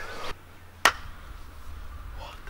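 A single sharp click about a second in, over a faint steady background hiss.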